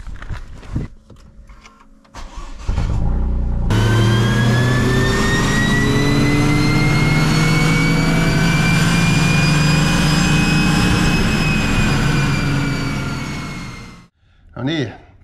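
A few clicks and knocks, then the Toyota GR Yaris's turbocharged three-cylinder engine starts about three seconds in and runs hard on the chassis dyno rollers for a dyno pull. Its pitch and a high whine over it climb slowly for several seconds, then ease and fade out near the end.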